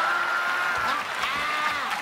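Game-show studio audience and contestants laughing, with clapping. Over the laughter, one person gives a long held laughing cry for about a second, then a second one that rises and falls.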